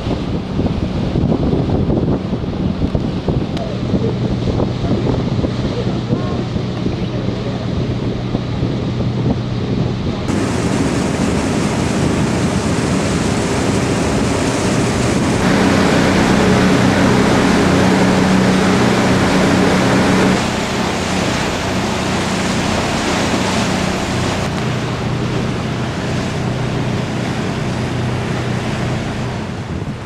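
A cruise boat's engine droning steadily under wind buffeting the microphone and water rushing past the hull; the drone and the water are loudest for a few seconds just after the middle.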